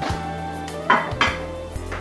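A ceramic plate set down on a granite countertop and a frying pan handled on the stove: two sharp clinks about a second in, over background music.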